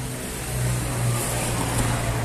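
A steady low mechanical hum with a wide background hiss, the sound of a running machine or engine.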